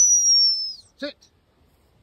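A gundog training whistle blown in one long blast of a bit under a second, a single high, clear tone that sags slightly in pitch before cutting off: the single-blast sit signal to the spaniel.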